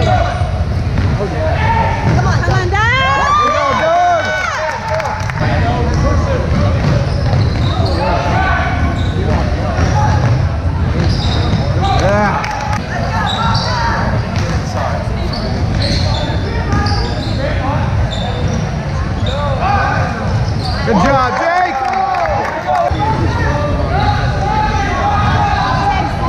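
Basketball game on a hardwood gym court: the ball bouncing as players dribble, with sneakers squeaking in short rising-and-falling squeals a few seconds in and again near the end, over the voices of spectators.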